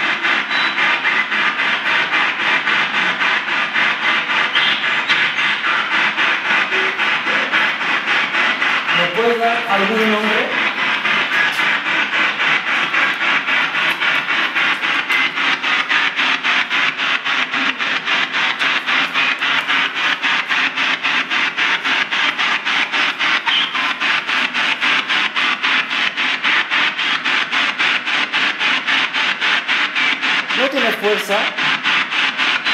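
Radio static chopped into rapid, even pulses several times a second, as a spirit box sweeps through stations, with a brief snatch of voice about nine seconds in.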